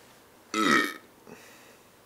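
A woman burps once, about half a second in: a short, loud burp that drops in pitch, brought up by the fizz of a cola she has just gulped down.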